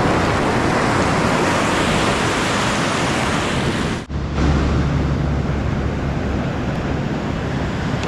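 Waves washing through shallow surf with wind on the microphone. About four seconds in the sound drops out briefly, then a deeper, steadier wind rumble sits over the surf.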